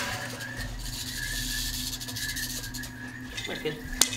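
Rattlesnake shaking its tail rattle, a continuous dry buzz that starts about half a second in: the snake's defensive warning.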